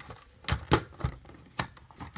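Hard plastic clicks from handling a G1 Powermaster Optimus Prime toy trailer as its rear compartment is closed: two sharp clicks close together about half a second in, then a quieter one later.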